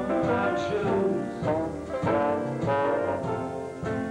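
Live traditional jazz band playing a slow tune, with a brass instrument carrying the melody in a run of held notes over the rhythm section.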